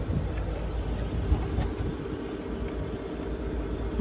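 Semi-truck diesel engine idling: a steady low rumble with a faint hum.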